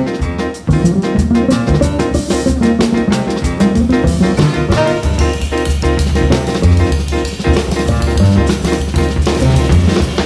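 Small jazz band playing live: a drum kit keeps a busy beat with cymbals under a walking upright double bass, with the band playing together over them. The level drops briefly just under a second in, then a loud drum hit comes in.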